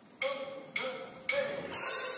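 A drummer's count-in: sharp stick clicks about half a second apart, four in all, the last one near the end, setting the tempo before the band comes in.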